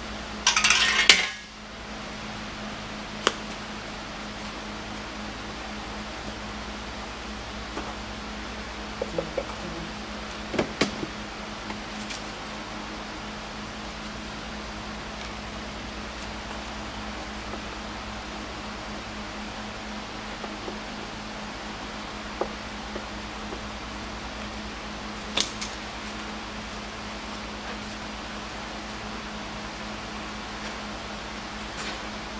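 Scattered sharp metallic clinks and clicks of hand tools and parts being handled, with a brief loud rush of noise about a second in, over a steady low hum.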